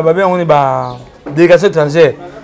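A man's voice speaking, with one long drawn-out vowel that slides down in pitch about half a second in.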